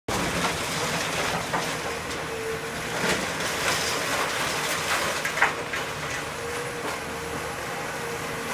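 Heavy demolition machinery running steadily with a faint steady whine, and a few sharp cracks and crunches of building material breaking, the loudest about five seconds in.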